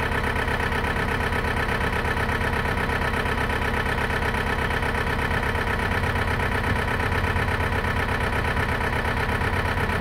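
An engine or motor running steadily at idle, a constant mechanical drone.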